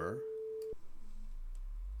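A Max MSP sine oscillator plays a steady 440 Hz sine tone through the speakers. It cuts off with a click a little under a second in as the frequency number is changed, and a much lower sine tone, a deep hum, swells up about a second in.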